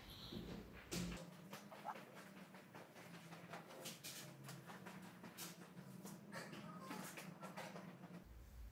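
Near silence: faint room tone with a low steady hum and a few faint scattered knocks, fitting balls being set down and footsteps around the table.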